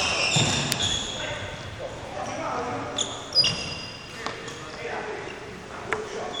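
Badminton play in a sports hall: several sharp racket hits on a shuttlecock, the loudest about three and a half seconds in. Between the hits come short high squeaks of sports shoes on the wooden court floor, echoing in the hall.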